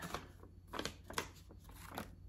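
Faint rustling and soft handling noises as cross-stitch supplies are handled, with one slightly sharper tick a little past the middle, over a steady low hum.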